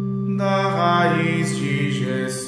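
Portuguese liturgical chant sung on long held notes, with a new sung phrase entering about half a second in.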